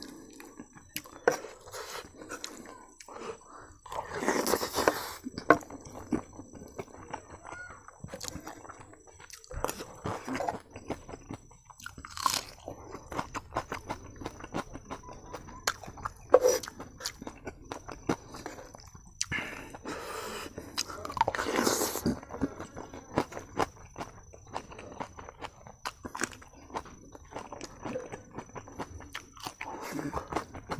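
Close-miked eating: chewing and crunching mouthfuls of rice with dal curry, fried chayote and dry fish, with short clicks of a steel spoon against a wooden plate. A few louder chewing bursts stand out, the strongest about four and twenty-one seconds in.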